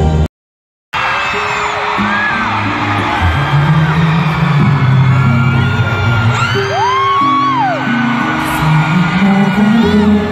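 Live pop concert music heard from the audience, with held low notes, while fans scream and whoop over it. The sound cuts out completely for about half a second near the start, where two clips are joined.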